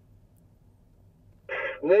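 Two-way radio speaker keying up: after a near-quiet pause, a short burst of radio static about a second and a half in, then a voice starts coming over the radio at the end.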